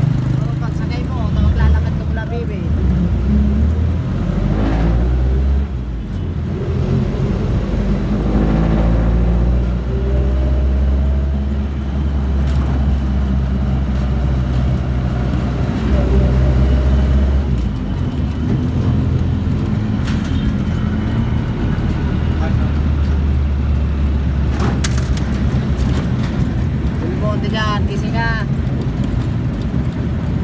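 Jeepney engine running heard from inside the cab, its note shifting up and down as the vehicle accelerates and eases off in traffic, with a brief dip about five and a half seconds in and again about eighteen seconds in.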